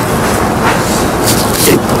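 Loud, steady rumbling room noise of a busy classroom, with faint background voices and a few short hisses near the end.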